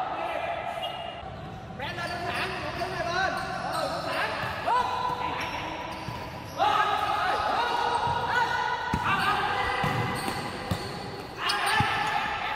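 Futsal scrimmage on a wooden indoor court: the ball thuds off feet and the floor, shoes squeak on the boards, and players call out, all echoing in a large hall.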